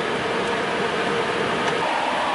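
Steady car cabin noise, an even rushing hiss with a faint steady hum underneath.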